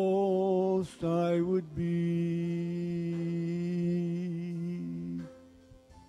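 A man singing a slow hymn solo into a microphone, gliding between notes, then holding one long note that stops about five seconds in.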